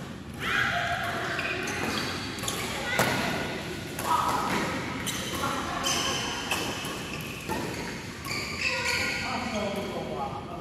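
Badminton rally in a large hall: several sharp racket strikes on the shuttlecock a second or so apart, the loudest about three seconds in, under players' voices calling out.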